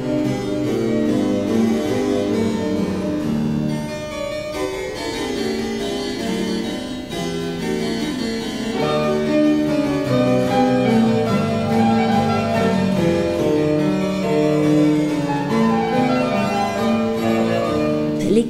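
A harpsichord and a fortepiano playing a classical-era duo together, a steady flow of keyboard notes with the plucked harpsichord most prominent.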